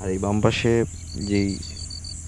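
Crickets chirping: a high, pulsed trill of about ten pulses a second over a steady high insect hiss, with a man's voice speaking briefly over it.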